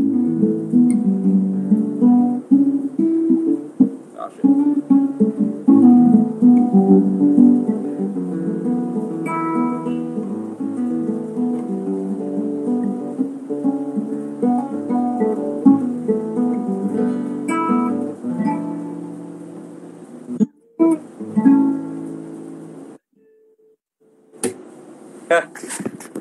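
Steel-string acoustic guitar being played: a run of plucked single notes and chords that thins out and dies away, stopping about 23 seconds in. A few sharp knocks follow near the end.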